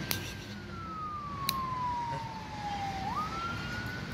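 A siren wailing: one long tone that slowly falls in pitch, then swings quickly back up about three seconds in and holds.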